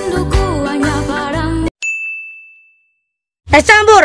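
Background music cuts off suddenly, followed by a single high bell-like ding sound effect that rings and fades over about a second. Then a short silence, and a voice starts near the end.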